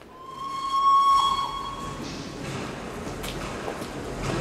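Steam locomotive whistle giving one long, steady blast of about two seconds, followed by hissing steam.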